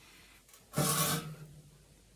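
A chair creaking and scraping as a person stands up from it: one rasping creak about three-quarters of a second in, its low tone trailing off over half a second.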